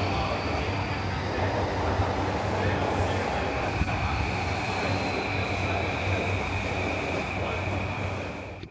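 A JR Yamanote Line commuter train (E235 series) pulling into a platform: a steady rumble of wheels and running gear under a high whine that drifts slowly lower as the train slows.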